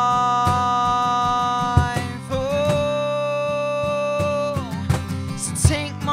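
Live acoustic song: a male singer holds two long sustained notes, the second lower, over a steadily strummed acoustic guitar, then moves into shorter sung phrases near the end.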